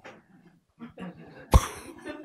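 A single sharp cough close to a handheld microphone about one and a half seconds in, loud, with a low thump on the mic.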